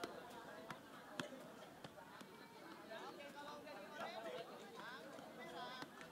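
Faint background chatter of voices, with a few soft, irregular taps of a football being kept up on the foot.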